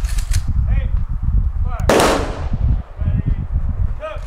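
A single sharp bang about two seconds in, with a short ringing tail, over a steady low rumble and a few quick clicks near the start.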